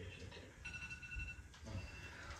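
A faint electronic tone, two pitches sounding together, held steady for about a second in the middle, over low room rumble.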